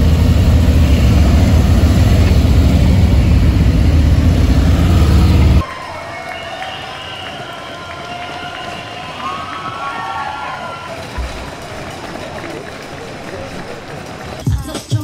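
Police motorcycle engines running loud and low as the escort rides past, cutting off abruptly a little over halfway through. After that, quieter street sound with crowd voices.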